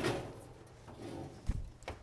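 Wall oven being loaded: a short metal clatter at the start as a cast iron skillet goes onto the oven rack. Then a low thump about one and a half seconds in as the oven door is swung toward closed.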